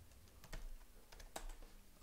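A few faint, scattered computer keyboard keystrokes.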